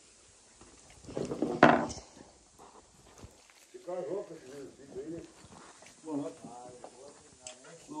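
Quiet, indistinct talk, with one short noisy burst about a second and a half in.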